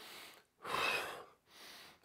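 A man breathing in audibly through the mouth: one louder, sharp inhale of under a second, with fainter breaths just before and near the end. It is the breath in of the exercise's breathing pattern, taken in time with the move.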